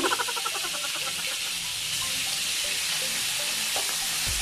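Beef strips frying in hot oil and butter in a pan, a steady sizzling hiss, with a brief louder pitched sound at the very start.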